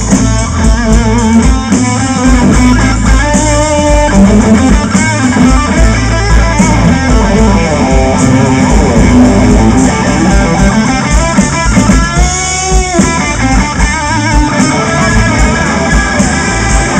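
Live blues band playing an instrumental passage: an electric guitar lead with bent and wavering vibrato notes over bass and drums.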